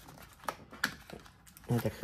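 A few light clicks and taps of cardboard box pieces being handled on a table, three in quick succession, then a man starts speaking near the end.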